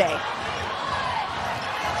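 A basketball being dribbled on a hardwood court, under a steady hum of arena crowd noise.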